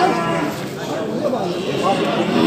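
Cattle mooing in a crowded market pen, under the overlapping chatter of people; a long, low moo begins near the end.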